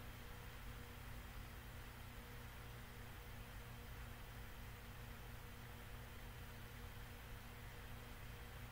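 Near silence: a faint steady hiss with a low, even hum.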